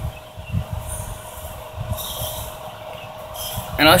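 Pelonis swamp cooler running at low speed: a steady motor hum over an uneven low rumble of air buffeting the microphone.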